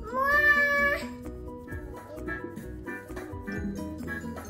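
A young child's drawn-out high-pitched call, rising a little and held for about a second before cutting off sharply, over light background music that carries on after it.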